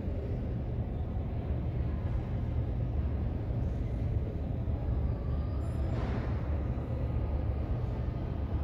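Steady low rumble of a taxiing Airbus A320 airliner's jet engines, muffled through the terminal window glass.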